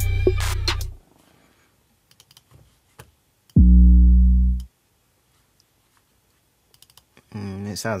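Hip-hop beat with drums and deep 808 bass playing back from the computer, cutting off about a second in. After a few faint mouse clicks, a single deep 808 bass note sounds for about a second, falling slightly in pitch, as a note is auditioned in the piano roll.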